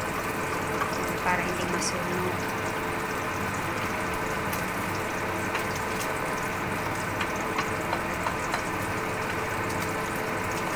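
Small pieces of boiled pork sizzling in hot oil in a frying pan, turned with a spatula, with a few taps of the spatula against the pan.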